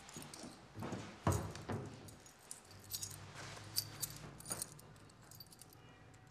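Rummaging in a wooden locker: a dull knock about a second in, then a few light metallic clinks and jingles of keys around the middle.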